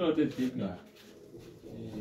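Speech only: a man talking in a low voice, loudest in the first second, then quieter.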